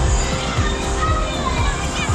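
Music playing with children's voices and people talking over it, a busy crowd hubbub with no single sound standing out.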